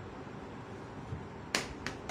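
Two sharp clicks close together about a second and a half in, over steady low room hiss: handling noise as the recording phone is moved.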